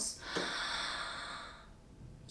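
A person's long audible breath, a single breathy rush lasting about a second and a quarter that fades away.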